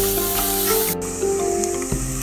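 Chopped onion and ginger-garlic paste sizzling in hot oil and ghee in a pan as it is stirred with a wooden spoon, with background music of held tones. The sizzle drops away sharply about halfway through, leaving mostly the music.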